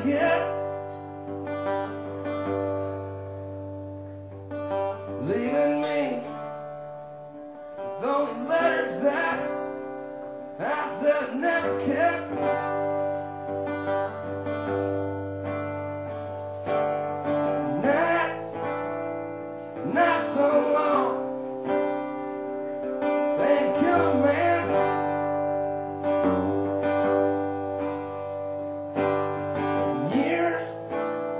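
Live solo performance: a steel-string acoustic guitar strummed steadily in sustained chords, with a man's voice singing phrases that come and go every few seconds over it.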